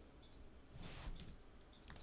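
A few faint clicks from a computer mouse and keyboard in use, over a low steady hum.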